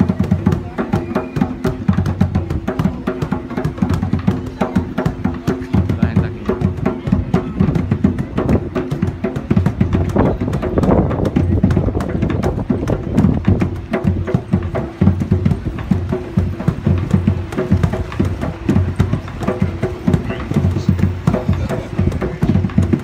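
Live group of musicians playing drum-led music, with a fast, steady beat of drum strokes under sustained pitched notes.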